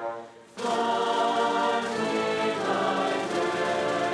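Mixed choir singing a school alma mater with a small instrumental ensemble, flutes among them. The music breaks off briefly at the start, a breath between phrases, then the full choir comes back in.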